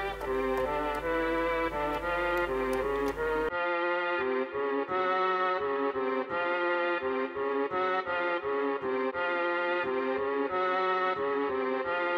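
A melody played on the Mellotron V software instrument: a sustained, reedy keyboard tone stepping through notes about twice a second. A low hum underneath stops about three and a half seconds in, and the tone turns cleaner and duller.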